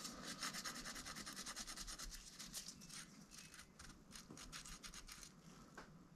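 Faint, rapid scrubbing of a pipe cleaner worked back and forth inside a saxophone key's hinge tube, scouring out old grime and grease with naphtha. The strokes thin out and fade about halfway through.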